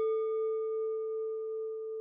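A single struck bell-like chime ringing out as one steady note with fainter higher tones above it, fading slowly and cut off suddenly at the end: a transition sound effect under a title card.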